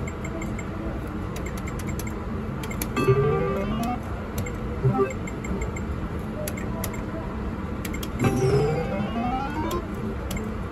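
IGT video poker machine playing its electronic sound effects: a run of stepped, rising tones about three seconds in, and a longer rising run near the end as a three-of-a-kind win is credited. Scattered clicks and a steady casino din run underneath.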